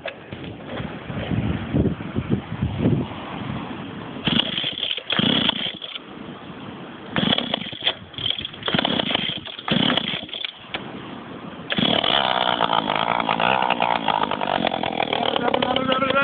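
Small petrol engine on a homemade scooter sputtering in several short bursts as it is being started, then catching about twelve seconds in and running steadily at high revs.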